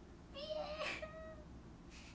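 A young woman's short, high-pitched squealing laugh, held on one pitch for about a second with a breathy burst in the middle.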